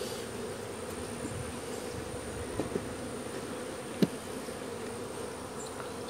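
Honey bees buzzing steadily over an open hive, an even hum. A single sharp click sounds about four seconds in.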